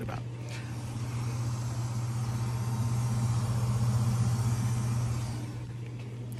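Steady low electric hum from a drinking fountain that is stuck running, with a faint hiss over it. It grows louder towards the middle and eases off near the end.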